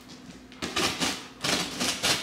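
Cardboard box and plastic wrapping rustling and scraping as a boxed artificial olive tree is pulled out, in several short bursts starting a little over half a second in.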